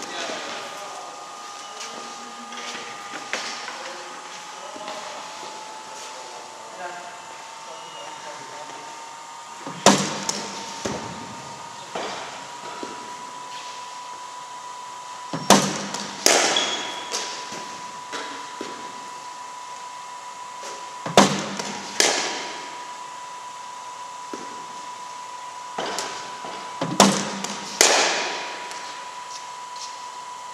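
Cricket ball struck by a bat in an indoor net, four deliveries about five and a half seconds apart, each heard as a pair of sharp knocks under a steady hum.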